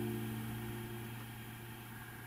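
Final chord of a nylon-string classical guitar ringing on and fading away slowly.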